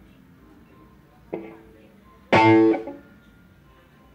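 Amplified electric guitar struck twice between songs: a short chord about a second in, then a louder chord a second later that rings for about half a second before it is damped.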